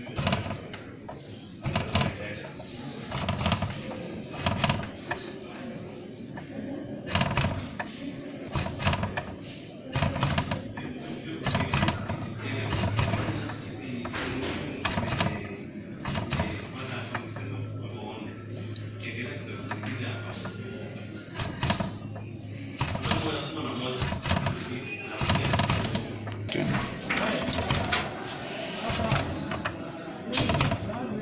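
Indistinct background talk with frequent sharp clicks and taps throughout. A low steady hum runs through the middle stretch.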